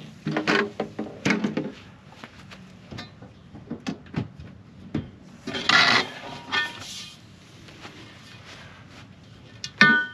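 Long pipes being slid out of an RV's pass-through storage bay and laid down: a run of knocks, scrapes and rattles, with a louder clattering scrape about six seconds in.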